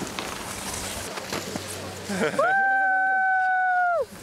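Outdoor background noise with faint voices, then a person's voice holding one long, high, steady note for about a second and a half near the end.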